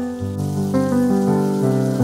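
Background piano music, a slow sequence of held notes, over a steady soft hiss that grows a little stronger about half a second in.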